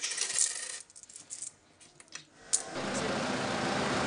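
Coins clinking: several small metallic clicks in the first second and a half, and one more sharp click a little after the middle. A steady background hiss rises near the end.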